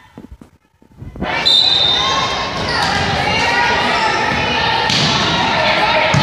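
Spectators and players yelling in a gymnasium, breaking out suddenly about a second in and staying loud, with knocks and thuds of the volleyball being played.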